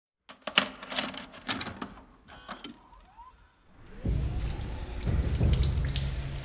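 A run of irregular sharp clicks and taps, then a low rumble that swells in from about four seconds and keeps growing.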